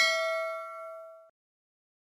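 A bell-like ding sound effect, one ringing strike fading out over about a second.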